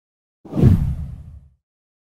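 A deep whoosh sound effect for an animated intro transition, starting suddenly about half a second in and dying away within about a second.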